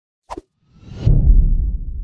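Channel logo sound effect: a short pop, then a whoosh that swells into a deep boom about a second in and slowly fades.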